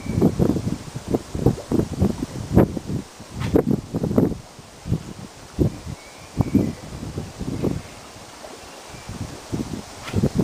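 Wind buffeting the microphone in irregular gusts, a rumbling rush that comes and goes every fraction of a second and eases off in the later seconds.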